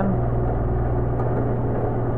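Steady motor hum from a brake booster test bench while the booster is being pressurized; the lowest part of the hum drops away about a second in.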